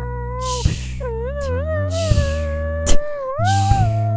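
Layered a cappella voices performing an instrumental metal passage. A wordless lead voice holds and bends its pitch in slides over a low sung drone. Vocal-percussion 'woosh' cymbal washes sound near the start and again near the end, with a sharp snare-like hit about three seconds in.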